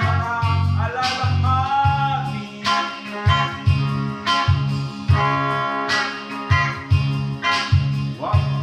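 A rock song played on electric guitar over a bass line of short, repeated notes, with some guitar or vocal lines bending in pitch.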